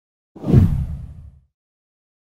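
A deep whoosh sound effect with a low boom to it, swelling up fast about a third of a second in and fading away by a second and a half.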